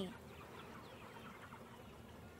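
Faint, quiet background during a pause, with a few soft, short chirp-like sounds scattered through it.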